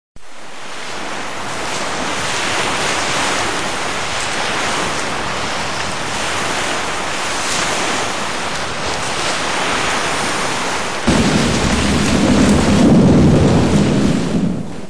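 A steady rushing noise without any tone or rhythm, storm-like, with a deeper rumble joining about eleven seconds in.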